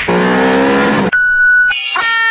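A loud, engine-like drone with a slightly rising pitch is cut off about a second in by a single steady electronic beep lasting about half a second. Music starts just before the end.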